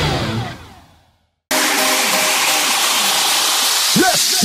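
Intro logo music fading out to a moment of silence, then a sudden steady hissing noise effect, the white-noise sweep of an electronic intro track.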